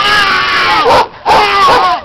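A young person's voice yelling a long, loud, high held call that breaks off just before one second in, then a second call that wavers in pitch.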